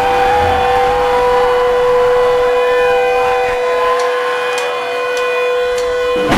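Electric guitar feedback held as one loud, steady, siren-like tone, with a second, higher tone wavering above it over crowd noise.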